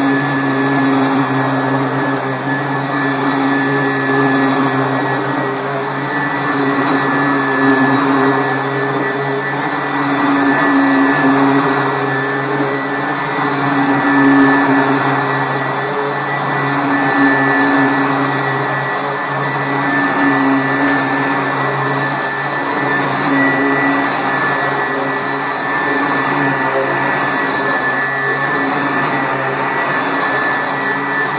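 Sanitaire SC886 commercial upright vacuum running over carpet, its brush roll fitted with bristle strips in place of the beater bars. A steady high whine runs under a sound that swells and eases about every three seconds as the vacuum is pushed back and forth.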